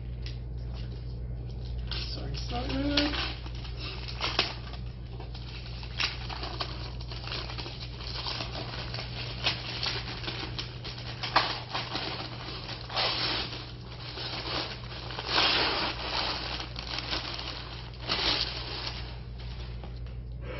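A cardboard box being opened by hand: cardboard and paper crinkling, rustling and tearing in irregular bursts. A short hummed or murmured sound comes about three seconds in.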